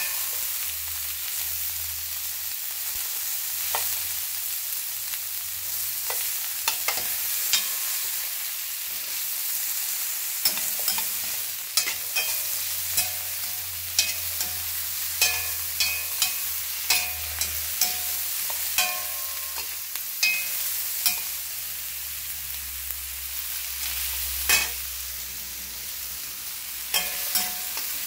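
Sliced onions sizzling in a stainless steel pan, close to browning, with metal tongs clicking against the pan at irregular intervals as they are tossed.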